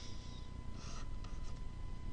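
Faint scratching of a stylus making a few quick pen strokes on a drawing tablet, with a faint steady high electrical tone underneath.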